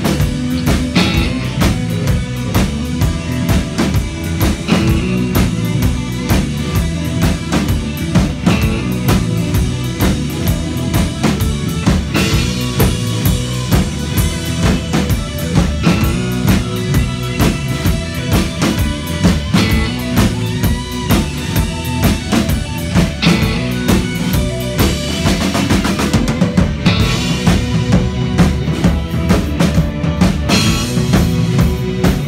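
Live rock band playing loudly: a drum kit keeping a steady beat under electric bass, guitar and keyboard.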